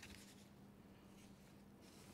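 Near silence: room tone with a steady low electrical hum and faint paper rustles at the lectern, once at the start and again near the end.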